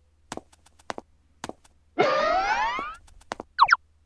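Cartoon sound effects: a few light taps, then a smooth rising tone lasting about a second, and a quick wobbly boing near the end.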